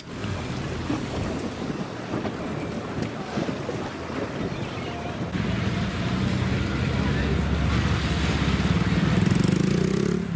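Wind and water noise, then from about five seconds in a RIB's outboard engine running and getting louder, rising in pitch near the end as it speeds up.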